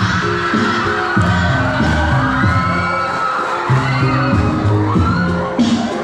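Loud amplified music with a steady bass line, and a crowd cheering and shouting over it.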